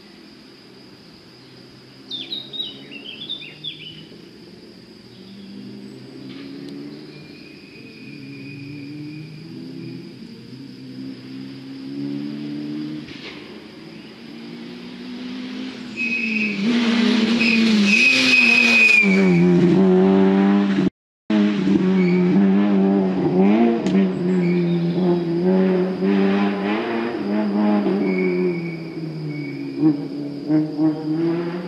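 Rally car on a special stage, first heard in the distance, its engine note rising and falling again and again as it drives the lane. It gets much louder about halfway through as it comes close, with a short complete dropout in the sound just after, then stays fairly loud, still rising and falling, and eases off a little near the end.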